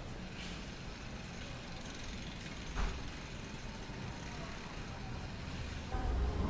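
Steady low background rumble of an urban street, with a faint knock about half a second in and a slightly louder one near the three-second mark.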